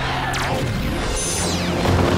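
Action-score background music mixed with sci-fi battle sound effects: a quick swoosh in the first half second, then a falling high-pitched electronic sweep after about a second.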